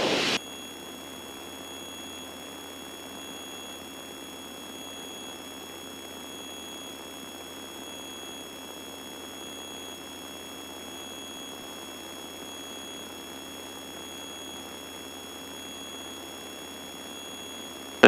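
Steady cabin drone and hiss of a Piper Seminole heard through the aircraft's intercom audio feed. Thin, fixed high-pitched electronic whines sit over it, and a faint short beep-like tone pulses a little more than once a second.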